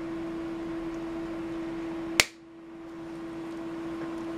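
A single sharp snip of wire cutters biting through the antenna's wire stub, about two seconds in, over a steady low hum.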